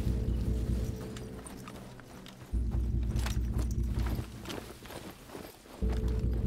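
Film sound mix: a fast, even low pulsing rumble with a steady hum, dropping out twice, under scattered footsteps, rustles and equipment clicks of armed soldiers advancing through undergrowth.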